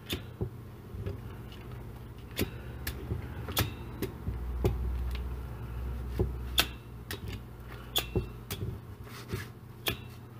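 Handheld needle meat tenderizer pressed again and again into a thick raw steak, giving sharp clicks at irregular intervals, about one or two a second.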